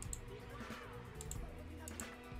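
Faint soundtrack of a TV series trailer playing at low volume, low music and voices, with a few short, light clicks.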